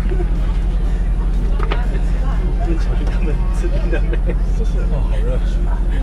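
Shuttle minibus engine idling, a steady low drone heard from inside the passenger cabin.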